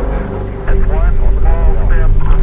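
A voice speaking, not clear enough to make out words, starting about two-thirds of a second in, over a low rumble and a steady droning tone.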